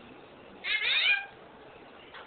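A pet parrot giving a single short call, falling in pitch, a little over half a second long, about half a second in.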